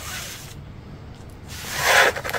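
A brief rustling rub of fingers on a paper instruction booklet, swelling near the end over a low background hiss.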